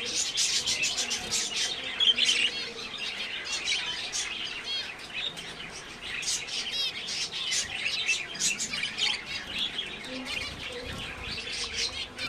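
A cage of zebra finches chirping: many short, overlapping calls from several birds at once, continuous, with a louder burst about two seconds in.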